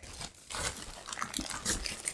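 Plastic packaging crinkling and rustling as it is handled, in short irregular crackles starting about half a second in.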